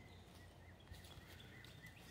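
Near silence: faint outdoor background, with faint, quickly repeated small high chirps in the second half.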